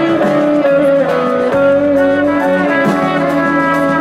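Live band playing an instrumental passage: electric guitar with a sustained trumpet melody over it.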